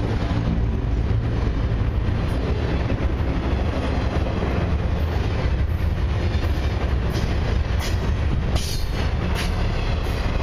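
Flatcars of a long Canadian Pacific Expressway intermodal train, loaded with highway trailers, rolling past close by: a steady low rumble of wheels on the rails, with a few sharp clicks near the end.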